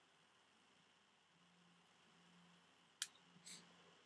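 Near silence during a drag on an e-cigarette: a faint low hum, then a sharp click about three seconds in and a short breathy hiss as the vapour is blown out.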